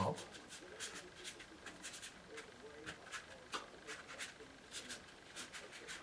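Faint, short scratchy strokes of a wide flat hake brush on wet watercolour paper, about two or three a second.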